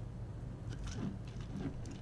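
Faint, light clicks of a metal cocktail shaker being handled and closed, over a steady low hum.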